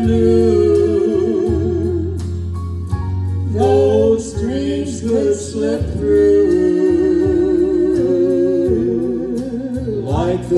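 A man and a woman singing a gospel duet into handheld microphones, with vibrato on held notes, over a steady instrumental accompaniment.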